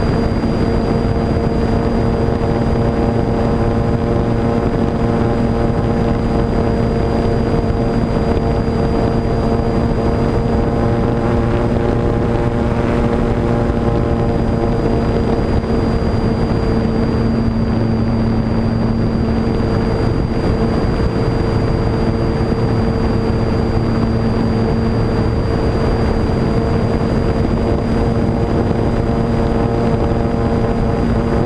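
Multiplex Cularis RC motor glider's electric motor and propeller running steadily, heard from on board, with a thin high whine above the hum and wind rushing past. The tone shifts briefly a little past halfway.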